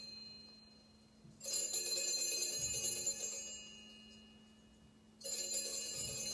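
Altar bell rung at the elevation of the host during the consecration. It is struck about a second and a half in and again about five seconds in, and each ring dies away slowly.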